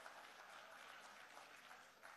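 Faint applause, slowly dying away.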